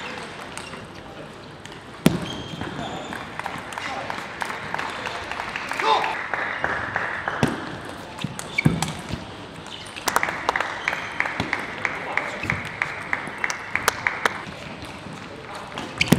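Table tennis ball clicking off rackets and the table during rallies, with a sharp hit about two seconds in and a short shout near six seconds. From about ten to fourteen seconds comes a dense run of clapping.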